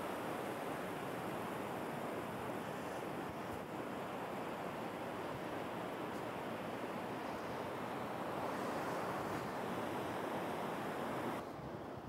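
Steady wash of surf breaking on a sandy North Sea beach. Near the end it cuts off abruptly to a quieter, thinner wind noise.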